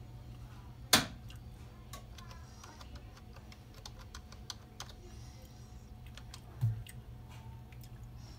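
Keys tapped on a Logitech computer keyboard as a short password is typed in, with a sharp loud click about a second in and a dull thump near the end, over a steady low hum.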